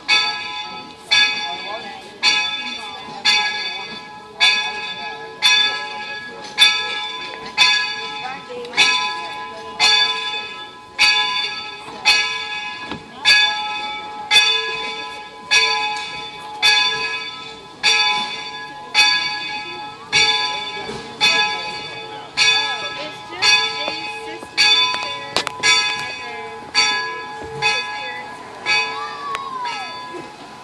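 Steam locomotive bell ringing steadily, about one stroke a second, each stroke ringing on before the next, as a warning while the 4-4-0 York creeps forward. The ringing stops near the end.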